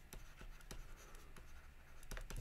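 Faint scratching and light ticks of a stylus writing words on a tablet.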